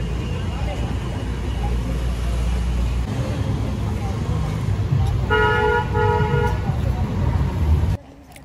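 Road traffic running close by with a steady low rumble, and a vehicle horn honking twice in quick succession a little after five seconds in.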